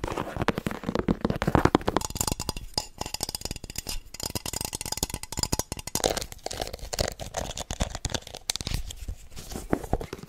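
Rapid fingernail tapping and scratching on objects held right against a microphone, first on a sneaker and then on a round red jar. It is a steady stream of quick clicks and scrapes, turning brighter and higher from about two seconds in.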